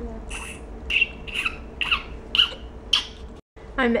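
A baby making short, high-pitched squeaks, about two a second, over a faint steady hum. They break off at a brief dropout near the end.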